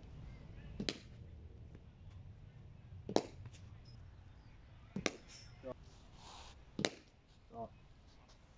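Four sharp knocks about two seconds apart, as a cricket bat strikes leather cricket balls fed overarm in the practice nets.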